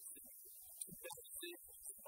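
Faint speech from a man talking into a handheld microphone, coming in short broken syllables.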